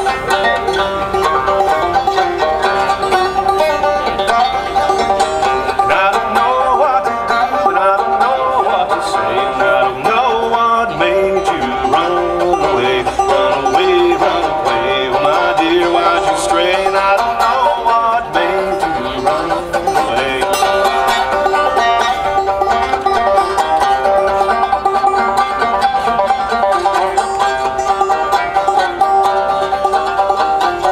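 A solo banjo, played clawhammer style, in a steady, unbroken run of plucked notes over a few held, ringing tones.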